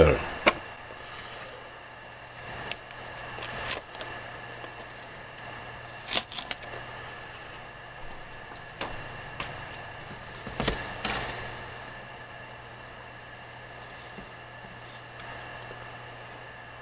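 Scattered short rustles and taps from a plastic transparency stencil and its tape strips being peeled off a painted board and the piece being handled, over a steady low hum.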